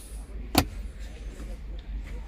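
A single sharp click from the Audi e-tron GT's centre-console armrest lid being handled, about half a second in, over a low steady background hum.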